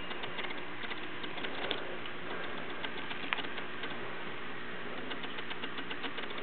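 Scattered light clicks and taps over a steady background hiss, with two sharper clicks about a second and a half apart: a baby's hand patting at a laptop keyboard.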